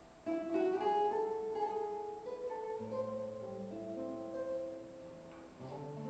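Solo classical guitar played fingerstyle. A held note fades, then a new melodic phrase of plucked notes starts sharply about a third of a second in, with bass notes joining about halfway. It softens briefly before another phrase begins near the end.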